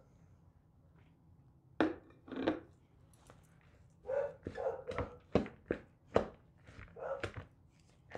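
Wooden spoon stirring and mashing a rice, split pea and herb filling in an enamel bowl. Two knocks come about two seconds in, then from about halfway there is a quick run of knocks and scrapes, roughly three a second, as the spoon hits the bowl.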